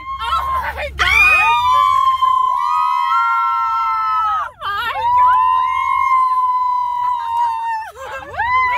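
Several women squealing in long, high-pitched, overlapping screams. There are three main held screams: one about a second in, a shorter one around three seconds, and the longest from about five seconds to the end, each sliding down in pitch as it stops. A car's low engine and road hum runs underneath.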